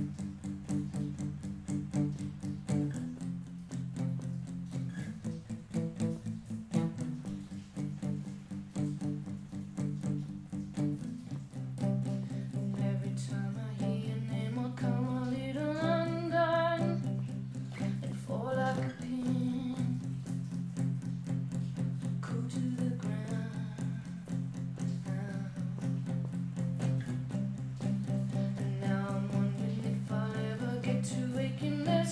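Solo acoustic guitar playing a song intro, picked chords held and changed every few seconds. Around the middle a brief wordless vocal line rises over the guitar.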